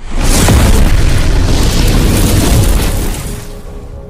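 Cinematic boom sound effect of an intro animation: a sudden loud impact that swells into a rushing, rumbling noise for about three seconds, then fades away near the end, over music.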